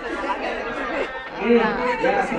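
Several voices talking over one another in a classroom: indistinct chatter with no single clear speaker.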